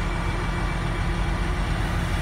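Intercity coach's diesel engine idling at a stop: a steady low rumble.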